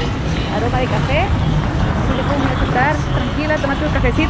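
Busy street ambience: people's voices talking over a steady low rumble of passing traffic.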